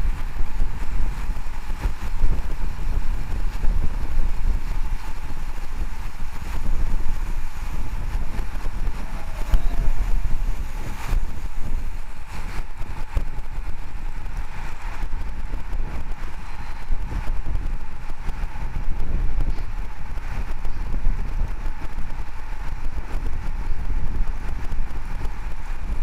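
Wind buffeting the microphone of a camera riding along on a moving road bike, a deep gusty rumble that rises and falls irregularly, over a steady rush of road noise.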